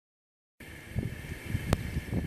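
Wind buffeting the microphone outdoors, an uneven low rumble over a faint steady high hum, starting abruptly about half a second in, with one sharp click shortly before the end.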